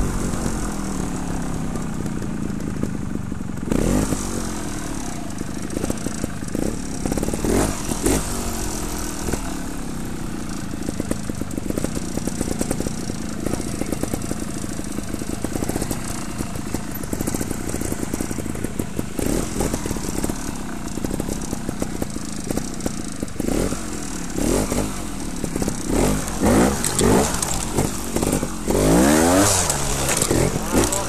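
Trials motorcycle engine idling, with quick throttle blips that rise and fall in pitch: one about four seconds in, one about eight seconds in, and several close together near the end.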